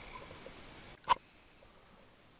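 A single short click about a second in, over a faint hiss that falls away to near silence just before it.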